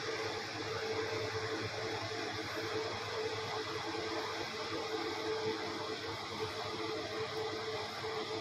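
Steady mechanical hum with an even hiss, as of a small motor running in the room.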